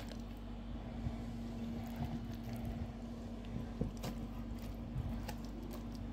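A few faint, soft knocks and rustles as raw chicken pieces are handled and laid in a pan, over a steady low hum.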